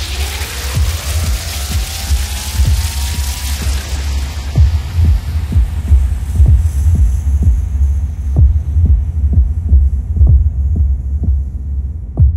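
Ambient electronic music: a deep bass drone with a throbbing pulse of short low beats, about two a second. A tone glides slowly upward over the first few seconds as a high hiss fades away.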